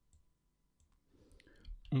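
A few faint, scattered clicks from a computer mouse and keyboard.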